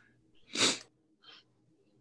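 A person sneezing once, a short sharp burst of breath, followed by a fainter second breath sound.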